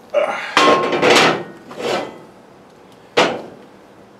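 A heavy cast iron skillet scraping against the iron top of a cookstove: four short rasps in the first two seconds, then one sharper scrape about three seconds in.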